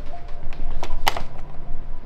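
Suspenseful background music, a low steady drone, with a sharp click or knock about a second in.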